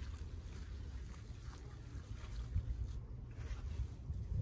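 Wind rumbling on the microphone, with faint wet squelches of minced lamb being kneaded by hand.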